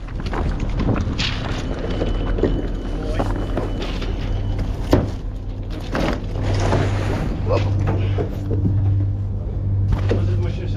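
Indistinct voices and scattered knocks and clicks over a steady low mechanical hum, which grows stronger after the middle. A brief thin high tone sounds early on.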